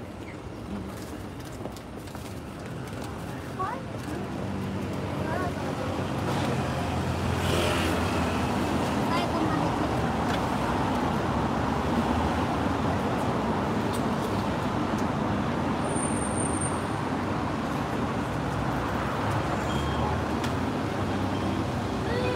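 Indistinct background chatter over a steady, dense noise that swells a few seconds in and then stays loud.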